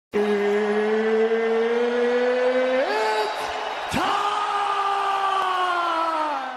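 Logo intro sound effect: a steady drone that creeps up in pitch and jumps higher about three seconds in, then a sharp hit a second later, followed by a new drone that slowly sinks in pitch.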